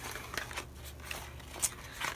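Faint handling of a small cardboard product box, light rustling with a soft click about a second and a half in.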